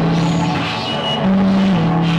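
Live experimental noise music from synthesizers, effects units and electric guitar: a loud low drone over a dense noisy wash. The drone steps up in pitch a little past halfway and drops back shortly after, with a brief high whistling tone just before.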